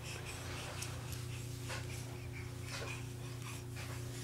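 A baby breathing hard and huffing with effort, over a steady low hum.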